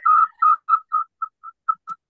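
A short high-pitched electronic beep repeats about four to five times a second and fades away over nearly two seconds. It is an echo loop on a video call, caused by a participant's computer and phone both having their microphones open, feeding each other's audio back.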